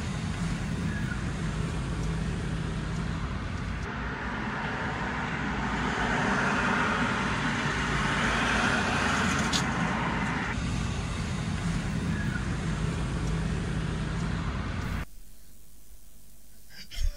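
Steady vehicle noise heard from inside a car's cabin. It swells for several seconds in the middle and drops away suddenly near the end.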